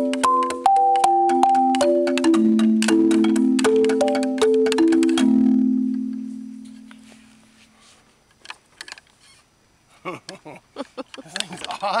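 Outdoor playground marimba played with mallets: a run of struck notes, each ringing on, that stops about five seconds in, its last low note fading out over the next couple of seconds. A few faint small knocks follow.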